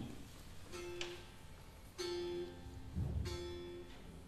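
Three quiet plucked notes on a string instrument, evenly spaced, each ringing out and fading: the slow accompaniment that opens a sung song.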